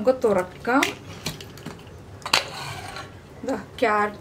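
Hawkins hard-anodised pressure cooker being opened: its metal lid clicks against the body, then scrapes briefly against the rim as it is worked free and lifted out.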